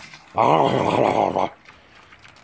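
A pig giving one long, low grunt of about a second, with its snout in its feed bowl.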